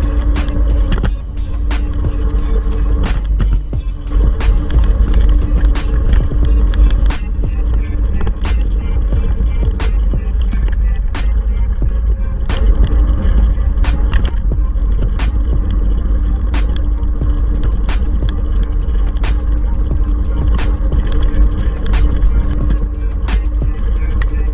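A steady low rumble of wind and scooter wheels on a concrete road, heard from a moving electric kick scooter, under background music with a beat and sharp clicks.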